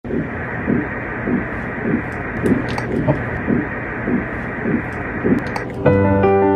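Heartbeat heard through a Doppler ultrasound monitor: regular whooshing pulses about every 0.6 seconds over a steady hiss. Electric piano music starts just before the end.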